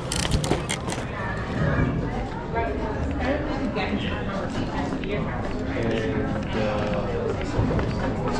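Indistinct voices and background music in a busy café, with a few sharp clicks right at the start.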